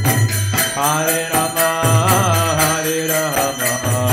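Kirtan music: a voice chanting over a mridanga drum, with brass karatalas (hand cymbals) struck in a steady rapid rhythm.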